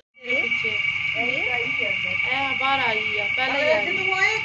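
A steady, high-pitched chorus of calling animals, starting suddenly a moment in, with gliding calls or voices over it.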